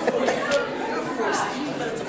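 Crowd chatter: many people talking over one another in a large room, with a few brief sharp clicks among the voices.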